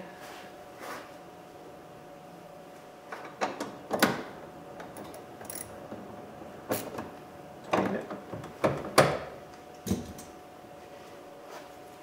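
Scattered clicks and knocks from a hand tool, a bit on an extension, working a screw at the door handle of a plastic interior door trim panel, about eight of them from about three seconds in, under a faint steady hum.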